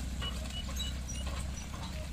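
Bullocks' hooves clopping irregularly on a paved road as they pull a cart heavily loaded with sugarcane, over a steady low rumble.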